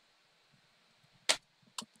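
Near silence, then one sharp click about a second and a quarter in and a fainter double click just before the end: clicks at a computer while changing the chart's symbol.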